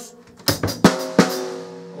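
Drum kit played with sticks at a slow, deliberate tempo: after a brief pause, a handful of snare drum strokes mixed with bass drum kicks begin about half a second in, the snare ringing on between hits.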